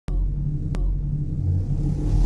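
Intro sound effect: a deep, steady rumble that starts suddenly with a sharp click, with a second click just before a second in.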